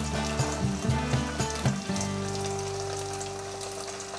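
Minced garlic and red chili paste frying in hot oil in a wok, a steady sizzle. Background music plays under it, with held low notes that change in the first two seconds and then settle into one long chord.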